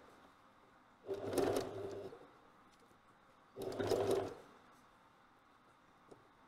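Pfaff Select 4.2 electric sewing machine stitching through thick wool in two short runs of about a second each, stopping between them while the fabric is turned around a curve.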